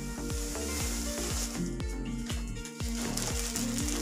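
Plastic wrapping on a rolled carpet rustling and crinkling as it is handled, strongest in the first half, over background music with a steady beat.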